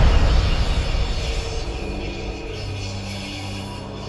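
A loud crash just before the start, its rumbling noise dying away slowly over the next few seconds, with a low steady hum coming in about halfway through.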